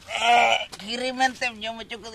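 A man's voice wailing with a fast, trembling quaver for about half a second, then going on in broken, crying vocal sounds.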